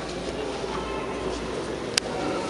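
Indistinct chatter of a crowd of visitors echoing in a large stone church, over a low rumble, with one sharp click just before the end.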